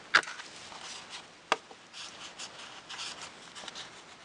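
Plastic stencil being lifted off gesso-textured cardstock: soft rubbing and rustling of paper and plastic, with a sharp click just after the start and another about a second and a half in.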